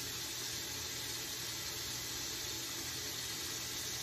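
Water tap running steadily into a bathroom sink, an even rush of water.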